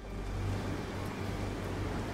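Boat's engine running with a steady low rumble and a hiss over it, starting abruptly at the beginning.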